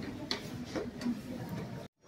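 Footsteps climbing a staircase: a few sharp steps roughly every half second, cutting off suddenly near the end.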